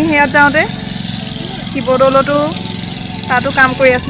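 A lawn mower's engine running steadily, under a louder voice in short repeated phrases.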